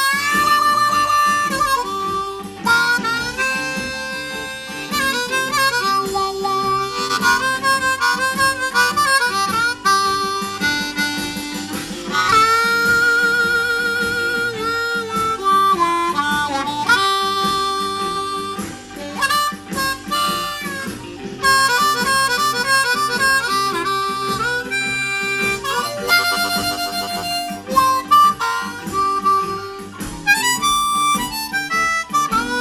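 Blues harmonica on a C diatonic harmonica played in second position (key of G). It runs through quick improvised phrases with some longer held notes that slide in pitch.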